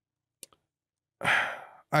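A man's audible sigh into a close podcast microphone, about a second in, fading out over half a second. It comes after a faint mouth click and just before he speaks.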